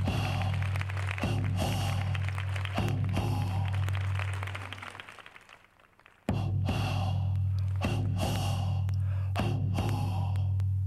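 Deep, booming strokes on a hand frame drum, each left to ring out, about one every one and a half seconds. Three strokes die away towards the middle, and three more follow from about six seconds in.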